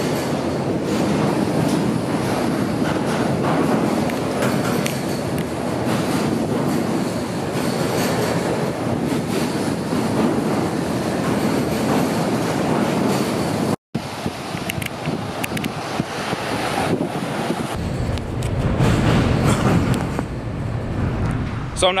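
Steady rumble and whir of vehicles crossing a steel truss bridge's open steel-grate road deck, with a brief silent gap about two thirds of the way through and a heavier low rumble in the last few seconds.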